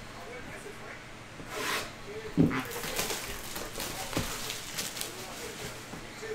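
Hands handling and unwrapping a plastic-wrapped trading-card hobby box. There is a rustle of wrap about a second and a half in, then a sharp knock on the cardboard box, the loudest sound, followed by lighter taps and crinkles.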